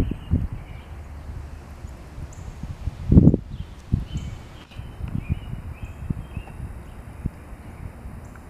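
Irregular low rumbling and thumps on the camera's microphone, with the strongest burst about three seconds in.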